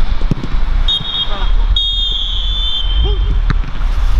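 Referee's whistle blown for half-time: a short blast about a second in, then a longer blast lasting about a second and a half. A low rumble of wind on the microphone runs underneath.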